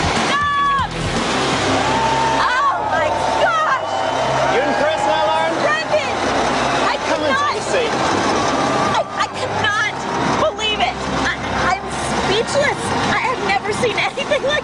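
Heavy trucks' engines running under background music, with excited voices and laughter.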